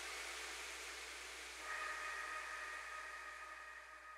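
Faint steady hiss and low hum from an idle PA loudspeaker, with a faint steady two-note tone coming in about two seconds in; the sound dies away near the end.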